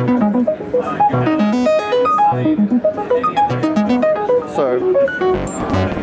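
Eurorack modular synthesizer playing a fast arpeggio of short plucked notes, about four or five a second, stepping up and down in pitch. The notes are generated by the Expert Sleepers FH-1's arpeggiator mode from keys held on a mini MIDI keyboard.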